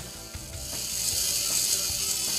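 Small robot servo running, its gear train turning a threaded jack screw that drives a bell crank and moves a model plane's sliding leadout guide: a steady high-pitched buzz that starts about a quarter second in.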